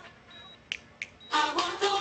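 Soundtrack of a TV commercial played back through a screen share: a hushed moment with two short, sharp clicks in quick succession, then music comes in loudly about a second and a half in.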